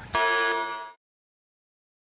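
A buzzer sound effect: one steady, horn-like buzz lasting under a second that marks an on-screen correction, then the sound cuts off to dead silence.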